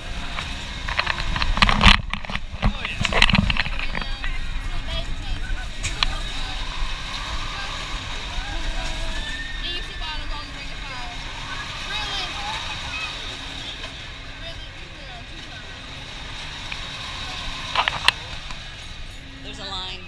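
Wind rushing and buffeting the microphone of a camera riding on a swinging fairground thrill ride, with riders' voices mixed in. The loudest gusts come about two and three seconds in.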